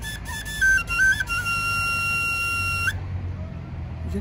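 A small flute playing a short phrase: a few quick notes stepping up and down, then one long held note that stops about three seconds in.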